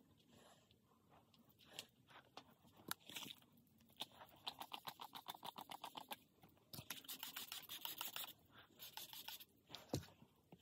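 A hair-product pump spray bottle misting onto hair, one hiss lasting about a second and a half about two-thirds of the way through. Around it come quiet scratching and rustling from hands working the hair, with a quick run of ticks in the middle.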